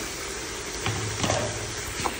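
Chopped gourd pieces sizzling softly in oil in an aluminium cooking pot, with a couple of faint clicks about a second in.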